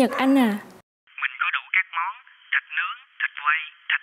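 Speech only: a woman's voice for the first second, then a voice coming through a telephone line, thin and narrow-sounding, talking steadily.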